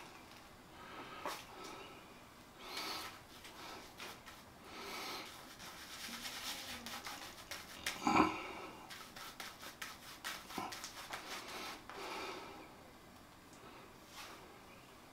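Silvertip badger shaving brush working soap lather on stubbled facial skin in soft, intermittent swishes. A louder stroke comes about eight seconds in, followed by a quick run of short scrubbing strokes.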